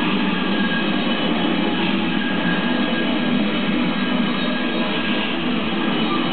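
Live rock band playing loud and steady: a dense wall of distorted electric guitar over drums.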